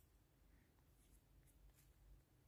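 Near silence, with a few faint, short scratches of a reed pen on paper in the second half as a dot and a small stroke are written.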